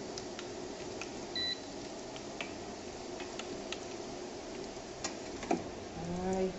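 Fresh egg noodles deep-frying in hot oil: a steady sizzle with scattered small crackles. A single short electronic beep sounds about one and a half seconds in, and a sharper click comes near the end.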